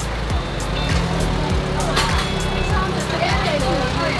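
A motor vehicle's engine running close by, a steady low sound, with voices and music going on over it.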